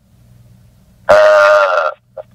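A man's drawn-out hesitation sound, a held "uhh" on one steady pitch lasting under a second, starting about a second in. It comes over a telephone conference line with a low steady line hum beneath it.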